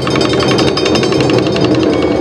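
Awa Odori festival accompaniment: a fast, dense run of sharp percussion strikes many times a second with flute tones held above it.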